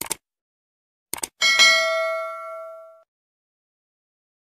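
Sound effects for a subscribe button: a mouse click, then a quick double click about a second later, then a notification-bell ding that rings out and fades over about a second and a half.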